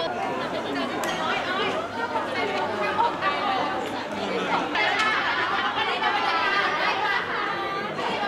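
Several people talking at once: the overlapping chatter of a small crowd in a large hall, with no single voice standing out.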